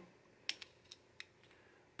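A few faint clicks, about four within a second, from small circuit boards being handled and held together in the hands; otherwise near silence.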